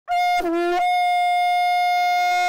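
Conch shell (shankha) blown as a horn: one long, steady, loud note, with a brief drop to a lower note an octave down about half a second in.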